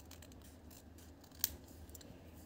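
Scissors cutting through paper in faint, short snips, with one sharper snip about one and a half seconds in.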